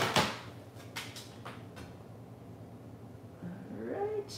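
A sharp knock, a few light clicks and a short creak rising in pitch near the end, over a steady low hum: handling noise from someone working away from the desk.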